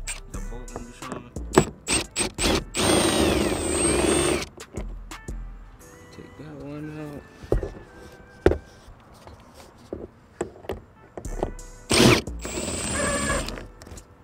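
A power driver runs in two short bursts, about three seconds in and again near the end, among scattered clicks and knocks of plastic trim being handled, over background music.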